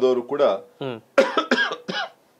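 A man speaking in Kannada, then, about a second in, three short coughs in quick succession.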